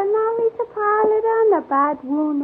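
A woman singing a slow melody in long held notes, with short breaks between phrases and pitch glides near the end.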